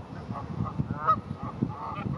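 Canada geese honking: several short calls, the loudest about a second in.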